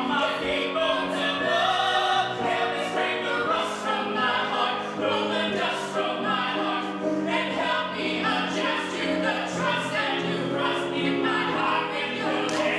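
A man and a woman singing a musical-theatre duet live, with piano accompaniment, in sustained melodic lines.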